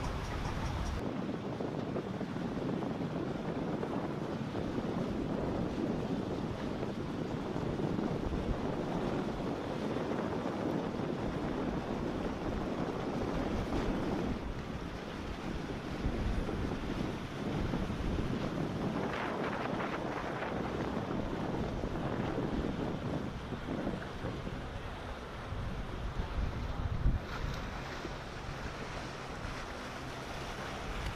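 Wind buffeting the microphone over waves and the rushing wash of outboard-powered boats running past through choppy water.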